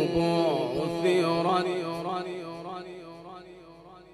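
A man's voice in melodic Quran recitation, holding a long, ornamented note at the end of a phrase. The note fades away over the last couple of seconds.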